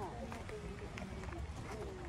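Indistinct voices of people talking at a distance over a steady low outdoor background, with a few faint clicks.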